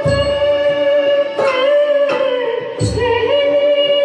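A woman singing a Hindi film song live with a small band. Her voice holds a long, slightly wavering note over sustained accompaniment, with a low drum stroke about every second and a half.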